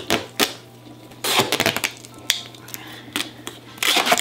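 Duct tape being pulled off the roll and wound around a person's wrists: short crackling rips, a cluster of them about a second and a half in and another near the end.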